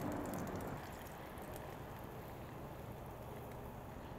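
Beer-battered corn dog deep-frying in hot vegetable oil in a cast-iron Dutch oven: a quiet, steady sizzle with faint scattered crackles.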